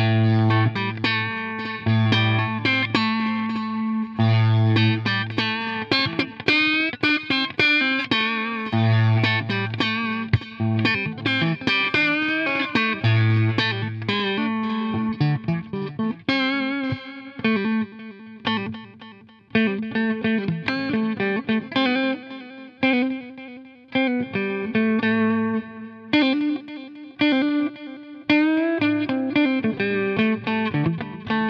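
Electric guitar played through the NUX Time Force digital delay pedal's stereo delay mode: a continuous run of picked notes and phrases, the delay carrying them on.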